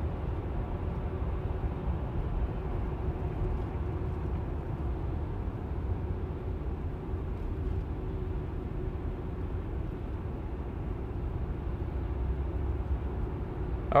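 Steady tyre and road noise heard from inside the cabin of a Tesla electric car moving at speed, with a faint steady hum and no engine sound.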